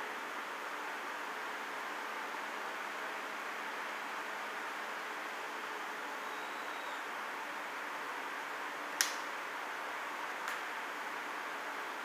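Canned lager poured slowly down the side of a tilted pint glass: a steady, soft pouring and fizzing sound, with a sharp click about nine seconds in and a fainter one a second and a half later.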